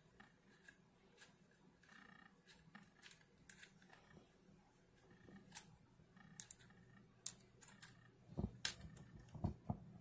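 Faint clicks and small metallic scrapes of a double-ended screwdriver bit being pulled from and pushed back into the quick-release chuck of a small cordless screwdriver. Sparse at first, with sharper clicks and a few dull knocks in the second half.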